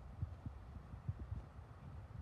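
Wind buffeting the microphone: an uneven low rumble with irregular soft thumps.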